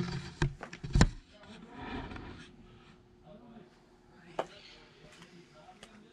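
Handling knocks as a camera is set down: two sharp clunks within the first second, then a rustle and another single knock near the middle, with a faint voice.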